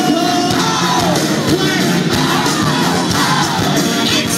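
A rock band playing live through a loud PA, with electric bass and guitars under a vocal line, and the crowd cheering along.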